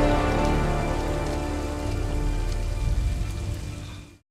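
Heavy rain pouring down, with soft sustained film-score tones held underneath; both fade away at the very end.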